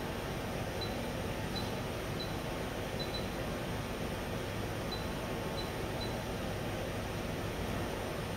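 Steady hum and hiss of a CNC machining center's fans running at idle, with faint short ticks now and then as keys are pressed on its control panel.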